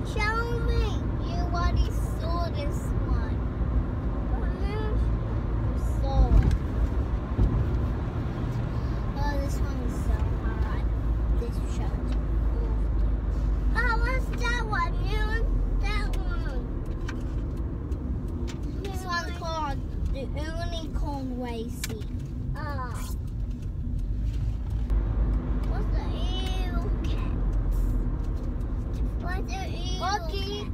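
Steady low road and engine rumble inside a moving car, with young children's voices coming and going over it and one brief louder knock about six seconds in.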